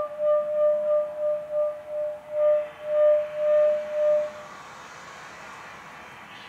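A wind instrument holding one mid-pitched note that swells and fades a couple of times a second, then stops about four seconds in.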